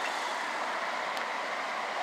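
Steady street traffic noise, an even hiss-like hum with no distinct events.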